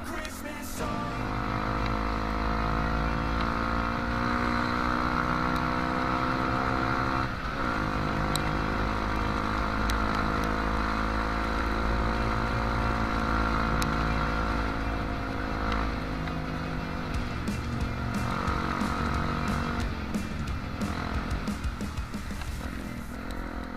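Trail motorcycle engine under way, its revs climbing slowly in one gear with a brief break for a gear change about seven seconds in. The revs then hold steady and ease off about sixteen seconds in, over a steady low rumble.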